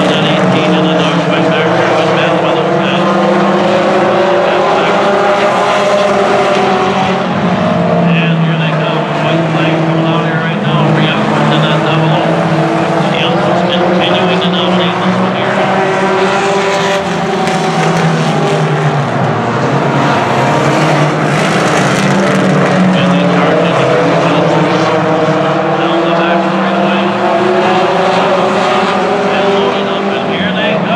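Short tracker race cars' engines running hard on a dirt oval, several at once, their pitch rising and falling as the cars go down the straights and lift for the turns.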